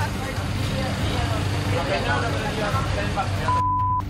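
A steady high-pitched beep lasting about half a second near the end, a broadcast censor bleep covering a spoken word, over indistinct talk and a steady low engine hum.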